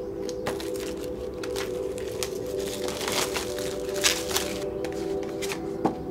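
Soft background music with steady held tones, overlaid by the scrapes and clicks of a cardboard product box being cut open with a knife and its inner box slid out, with two sharp knocks about four seconds in and near the end.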